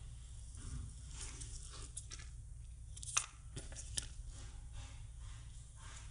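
Soft rustling and scraping of a paracord being twisted into a loop by hand over a plastic sheet protector, with two short sharp taps about three and four seconds in, over a steady low hum.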